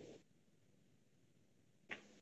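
Near silence: faint background hiss from the online call's audio.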